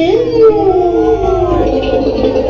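A long, howl-like gliding voice within a dance song: it rises sharply at the start, then slides slowly downward and gives way to the music about one and a half seconds in.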